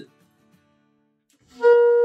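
Saxophone sounding one loud, steady held note that starts about a second and a half in after a pause. It is blown with the lower lip biting the reed too hard, so the tone comes out tight and squeezed rather than bigger.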